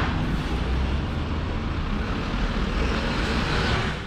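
Diesel engine and tyres of a Mitsubishi Fuso heavy dump truck, running steadily as it pulls out and drives past close by.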